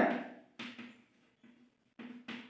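Chalk writing on a blackboard: a few short, faint scrapes and taps, the clearest about half a second in. A man's spoken word trails off at the very start.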